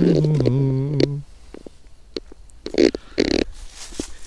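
A man humming a low, steady note for about a second, then two crunching footsteps in dry fallen leaves a little under three seconds in.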